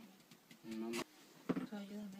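Soft speech: two short spoken utterances, with a sharp click between them about halfway through.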